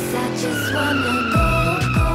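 Car tyres squealing in one long screech, falling slightly in pitch, as the car is floored away. Music with a heavy, thumping beat comes in about one and a half seconds in.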